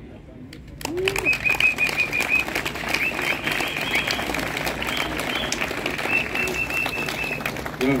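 Crowd clapping, starting about a second in after a short lull, with a high whistle blown over it in short runs.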